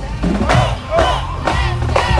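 Marching band members shouting a call together, several voices rising and falling and overlapping for about a second and a half.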